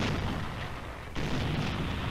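Shellfire on an old film soundtrack: one blast fading away, then a second sudden blast a little past a second in, its noise holding on afterwards.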